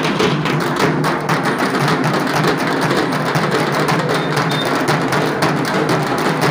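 A group of dhaks, large Bengali barrel drums, beaten together with thin sticks in a dense, fast, unbroken rhythm.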